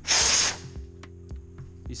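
A half-second burst of compressed air from an air blow gun, blowing brake cleaner off a valve spring to dry it.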